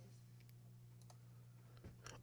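Near silence: a faint steady low hum with a few faint computer mouse clicks.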